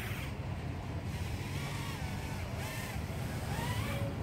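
Kingkong 110GT brushless micro racing quadcopter on RotorX 2535 bullnose props in flight, its motors giving a faint whine that wavers up and down in pitch with the throttle, over a steady low background rumble.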